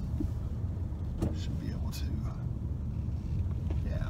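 Car driving slowly, heard from inside the cabin: a steady low rumble of engine and road noise.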